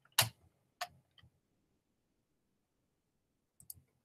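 A few sharp computer mouse clicks: a loud one just after the start, a softer one just under a second in, and a couple of faint ones near the end, with near silence between.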